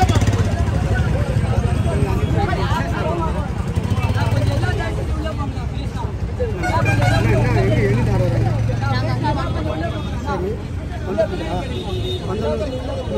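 A crowd of people talking over one another, many voices overlapping into a babble, with a low hum that comes and goes underneath.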